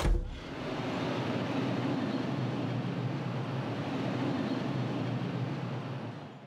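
Pickup truck engine running steadily with road noise, after a short low thump at the very start.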